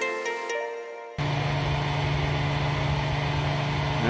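Soft plucked-string music that cuts off abruptly about a second in, replaced by a hair dryer running steadily on its low setting, a loud even blowing with a low hum.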